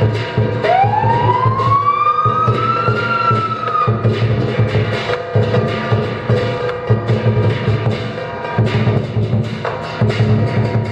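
Lion dance percussion: a large Chinese drum beats continuously with clashing cymbals. About half a second in, a single pitched tone glides upward over the percussion for about three seconds, levels off and dips away.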